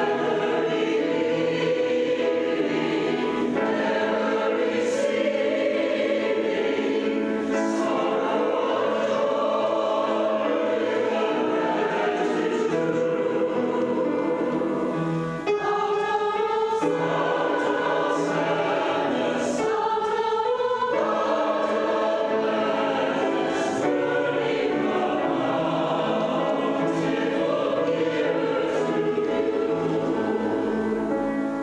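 Choir of men and women singing a hymn, with a brief pause between phrases about fifteen seconds in.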